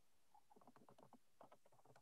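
Near silence on a video-call line, with faint, irregular soft ticks.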